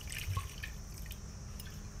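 Fish pieces simmering in a frying pan of sake and seasoning: the liquid bubbles and sizzles with small scattered pops.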